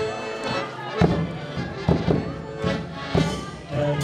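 Piano accordion playing sustained chords, with a few low bass drum beats at irregular spacing.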